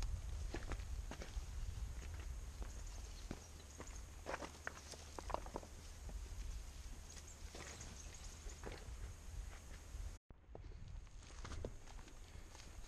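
Hikers' footsteps on loose rocks and dry grass in a stony creek bed: irregular steps with scuffs and clicking stones over a low rumble. The sound drops out briefly about ten seconds in.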